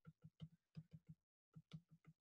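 Faint, quick ticking of a stylus tip tapping on a tablet screen while words are handwritten, in two short runs with a brief pause between them.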